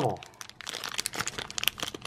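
Crinkly black mystery-pin bag being crumpled and handled, a run of small irregular crackles.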